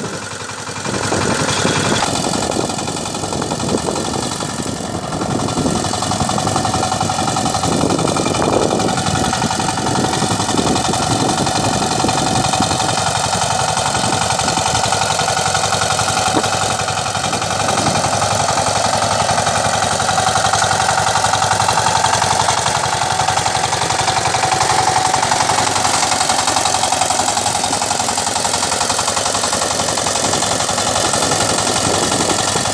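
Two-wheel power tiller's single-cylinder diesel engine running steadily under load as its rotary tiller churns dry soil, with a rapid, even chug.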